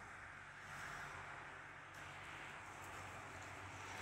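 Faint, steady outdoor background noise with a faint low hum and no distinct events.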